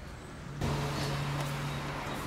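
Street traffic noise with a motor vehicle engine running in a steady low hum, starting abruptly about half a second in.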